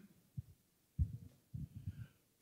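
A few low, muffled thuds of a handheld microphone being handled, one just before halfway and a cluster in the second half, as it is readied for a question.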